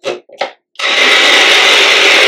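Small personal bullet-style blender's motor starting up about a second in and running at full speed with a steady, loud whir. It is puréeing soft papaya chunks with rose water and honey.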